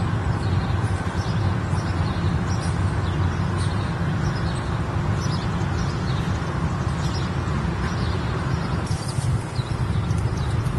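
Outdoor background noise: a steady low rumble, with short faint bird chirps scattered through it.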